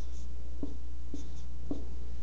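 Dry-erase marker writing on a whiteboard: about four short strokes, over a steady low hum.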